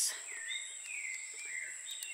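Outdoor garden ambience: a steady, high-pitched insect drone with a bird's gliding whistled calls over it, and a short knock or rustle at the very start.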